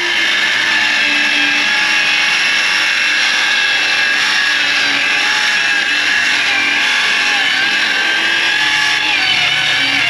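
Milwaukee M12 Fuel cordless circular saw ripping half-inch plywood along a track guide, its motor giving a steady high whine. The pitch sags a little now and then, because the cut is a heavy load for the small saw.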